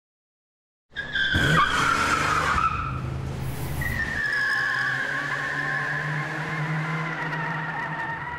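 Car tyres squealing in a skid, a sound effect under the title card. It starts about a second in, and from about four seconds a long, drawn-out squeal slowly drops in pitch over a low rumble.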